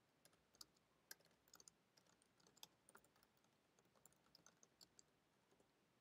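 Faint computer keyboard typing: irregular, closely spaced key clicks as a line of code is entered.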